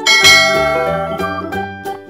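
A bright bell chime, the subscribe-animation notification sound effect, rings once just after the start and fades over about a second and a half, over background electronic keyboard music.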